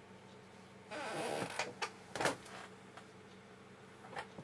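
Painting tools handled at the easel: a short scratchy swish of about half a second, then two sharp knocks, the second the loudest, over a faint steady hum.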